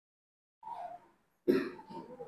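A short vocal sound, then a sharp cough about one and a half seconds in.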